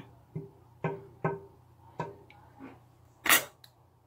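Metal ladle knocking and scraping against a metal pot while thick tomato sauce is scooped: a handful of short, irregular clinks, with one louder, sharper one near the end.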